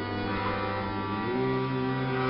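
Harmonium holding sustained notes in a Carnatic devotional bhajan, shifting to a new note a little over a second in.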